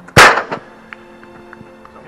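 A loud, sharp impact of a football struck hard right by the goal, ringing briefly with a smaller knock just after, over faint background music.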